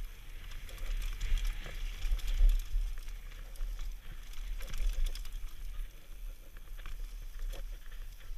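Mountain bike descending a dry, rocky dirt trail, heard from a helmet-mounted camera: a low, fluctuating wind rumble on the microphone, tyres crunching over dirt and loose stones, and scattered clicks and rattles from the bike.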